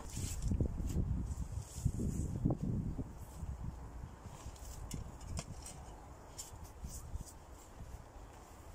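Handling noise while potting a young fig tree: irregular low bumps and scuffs for the first few seconds, then quieter, with a scattered few light clicks and knocks as a spade is picked up.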